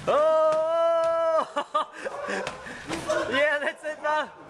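A long drawn-out "ohhh" exclamation at one steady pitch, held for about a second and a half, followed by short bursts of laughter near the end.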